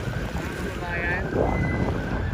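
Wind buffeting the microphone in a steady low rumble, with faint voices of people in the background about a second in.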